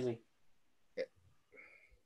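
The tail of a man's speech, then, about a second in, a single short vocal sound, like a hiccup, from one of the call's participants. Otherwise quiet.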